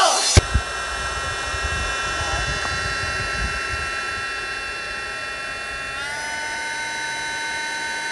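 Electric air blower running with a steady whine, inflating an inflatable tumbling air track; the whine steps up in pitch about six seconds in. A low rumble sits underneath.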